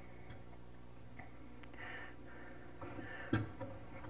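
Faint small clicks of a screwdriver and needle valve touching the aluminum outboard carburetor, one sharper click a little past three seconds in, over a steady low hum.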